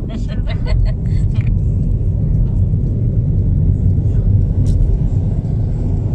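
Steady low rumble of a car heard from inside its cabin, with laughter in the first second or so.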